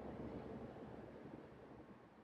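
Near silence: faint room tone, a low even hiss that slowly fades away.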